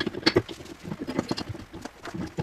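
Quick, irregular clicks and knocks of metal hand tools and fittings being handled against the floor, several a second, loudest in the first half.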